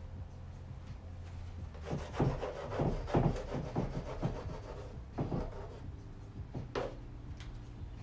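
Charcoal pastel stick rubbing on canvas in a quick run of short strokes starting about two seconds in, with one more stroke near the end. A steady low hum runs underneath.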